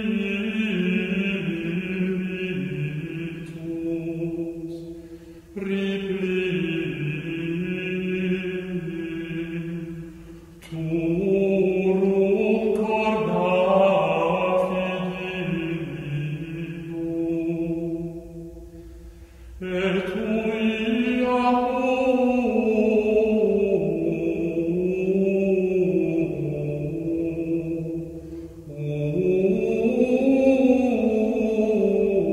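A slow devotional chant sung in long, drawn-out phrases, the voice holding and stepping between notes, with short pauses between phrases about every five to nine seconds.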